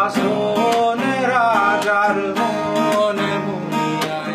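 A man singing to his own acoustic guitar, strumming chords steadily under a sung melody that glides in pitch.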